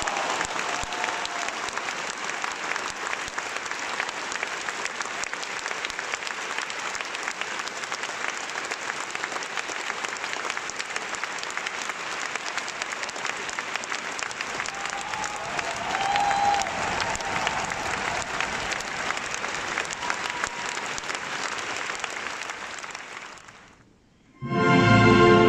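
Concert hall audience applauding steadily after a sung aria, dying away near the end.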